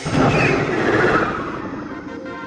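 Anime sound effect: a loud rush of noise that starts suddenly, sinks in pitch and fades away over about two seconds.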